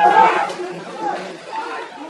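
Several people talking over one another, loudest in the first half-second and then fading.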